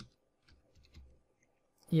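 A few faint, short clicks of computer keys being typed, then a man's voice starts speaking near the end.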